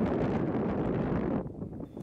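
Strong gust of wind blowing across the microphone, a steady low rush that drops away about a second and a half in.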